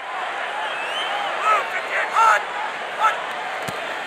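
Stadium crowd noise at a football game, a steady roar of the crowd with scattered shouts rising out of it and a couple of sharp clicks about three seconds in.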